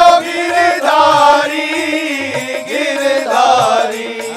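A woman singing a Hindu devotional bhajan, holding long, wavering ornamented notes, over a steady drum beat.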